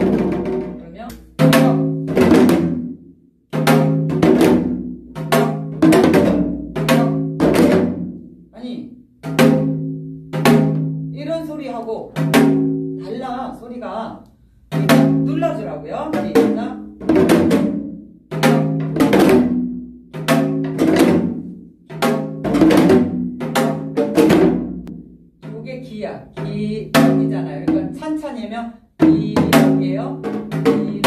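Janggu (Korean hourglass drum) playing the gutgeori jangdan in 12/8, cycle after cycle. Deep ringing strokes alternate with sharp stick strokes and quick rolls (deoleoleoleo).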